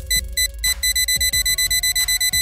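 Cartoon time bomb's countdown timer beeping rapidly, about seven short high beeps a second: the bomb is about to go off. A faint sustained tone underneath rises slightly halfway through.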